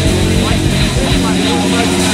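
Sampled training-drill recording layered into a progressive rock track: voices over a steady low drone.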